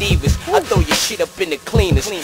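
Hip hop track: a rapper delivering verses over a beat with bass drum hits.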